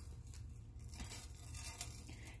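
Faint handling noise: a few light rustles and soft clicks as a metal chain necklace is picked up off a marble tabletop, over a low steady hum.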